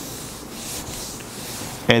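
Whiteboard eraser rubbed back and forth across the board, wiping off marker writing: a continuous rubbing hiss.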